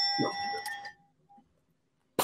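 A bell-like ding rings and fades away about a second in: a game-show sound effect marking a correct answer. A short vocal sound is heard under it, then near silence.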